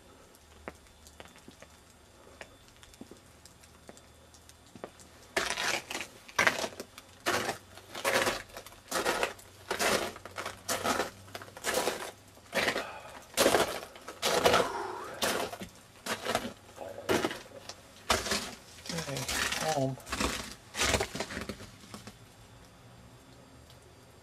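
Footsteps crunching on ice-crusted snow at a steady walking pace, about two steps a second. They start about five seconds in and stop shortly before the end.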